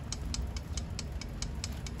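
Steritest Symbio peristaltic pump running at speed setting 50, with an even ticking at about six ticks a second over a low motor hum, as it draws diluent through the tubing to pre-wet the filter membranes.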